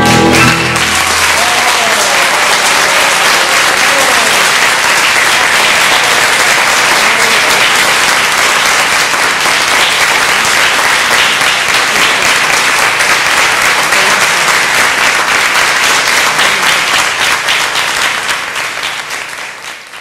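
The final held chord of a violin and string ensemble stops about a second in, and an audience applauds with steady clapping that fades out near the end.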